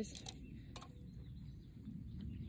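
Quiet outdoor background with faint bird calls and a few soft rustles and clicks as a kale seedling's root ball of potting soil is handled in gardening gloves.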